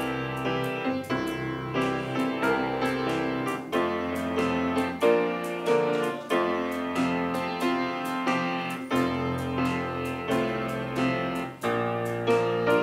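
Piano playing a slow instrumental piece for the offering, struck chords and bass notes changing every second or two.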